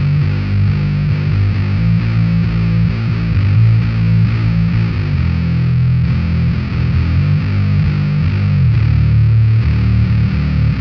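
Six-string electric bass played fingerstyle through a Sinelabs Basstard fuzz pedal: a continuous run of heavily fuzzed bass notes, changing pitch every fraction of a second, with a fizzy edge over the low end.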